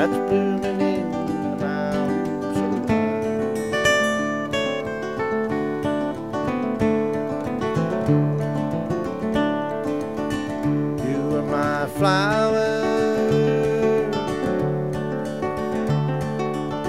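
Two acoustic guitars playing an instrumental passage together: a nylon-string cutaway guitar and a steel-string dreadnought acoustic, picked and strummed. About three-quarters of the way through, one note bends and wavers.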